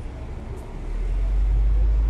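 Low rumble of car engines in slow street traffic passing close by, growing louder about a second in.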